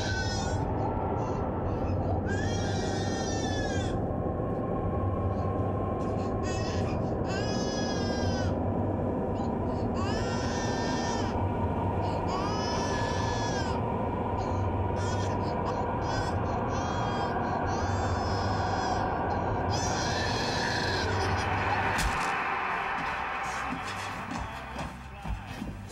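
A baby crying in repeated wailing bursts, each rising and falling in pitch, over a steady low droning music score. About two seconds before the end the crying stops with a sharp hit, followed by a hiss.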